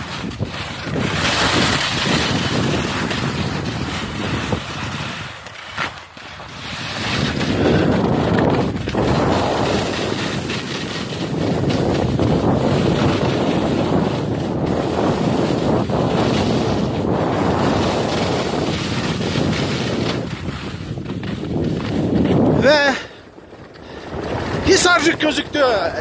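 Wind rushing and buffeting over the microphone of a skier's body-worn camera during a fast downhill run, mixed with the hiss of skis sliding on snow. The noise dies away briefly about 23 seconds in, and a voice comes in near the end.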